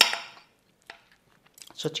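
Knife and fork clicking against a plate while meat is cut: a sharp click at the start that fades out, then a single light click about a second in and a few soft taps before speech resumes.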